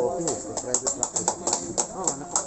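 Scattered applause from a small group of people: quick, irregular hand claps.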